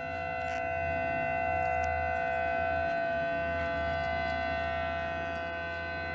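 Sirens sounding a steady, held tone with several pitches at once, swelling slightly over the first couple of seconds.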